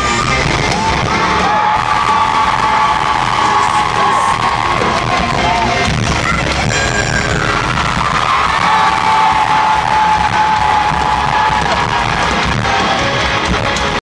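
Live amplified rock music played by a band at a loud outdoor concert, recorded from among the audience, with long held notes and the crowd yelling and cheering.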